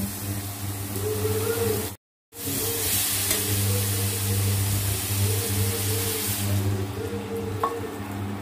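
Chopped star fruit and tomato sizzling in a steel kadai as a metal spatula stirs them, over a steady low hum. The sound cuts out briefly about two seconds in.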